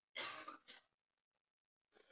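A person clearing their throat: one short rough burst followed at once by a smaller one.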